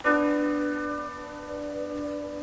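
Background music begins: a chord struck suddenly and left to ring, several held tones slowly fading.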